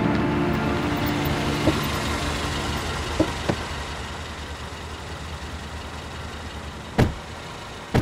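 Taxi car engine running low and steady as it pulls up, fading over the first couple of seconds, then small clicks of a door latch opening. A sharp door slam comes about a second before the end, with another knock just after it.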